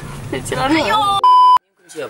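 A short burst of voice, then a loud, steady electronic bleep on one pitch lasting under half a second that cuts off abruptly into dead silence, an edit bleep laid over the soundtrack.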